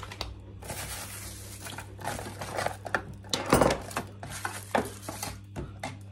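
Parts of an electric lunch-box food warmer being unpacked by hand: plastic wrapping rustling, with clinks and knocks as the plastic tub and stainless-steel tray are lifted out. The loudest knock comes about halfway through. A steady low hum runs underneath.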